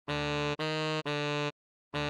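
Synthesized tenor saxophone playing a slow melody: three even notes of about half a second each, the middle one a step higher, then a short gap and the next note starting near the end. The tone is steady and buzzy, with no breath noise, and stops dead between notes.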